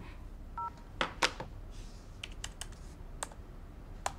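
A mobile phone's short two-tone beep as the call ends, then clicks and taps at the desk: two louder knocks about a second in and a quick run of light, sharp clicks like computer keys a little later.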